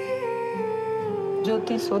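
A voice humming one long held note over a soft, steady musical drone, the pitch sinking slightly before it fades; a woman's speech begins near the end.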